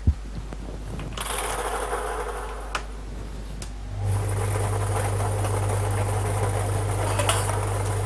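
Three-chamber clear acrylic lottery ball machine running to mix and draw the numbered balls. A hiss starts about a second in, and from about four seconds in a steady motor hum sets in.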